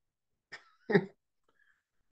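A man's single short cough about a second in.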